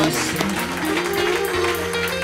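Live hip-hop band music with drums, electric bass and guitar playing. A melody steps upward over a held low bass note.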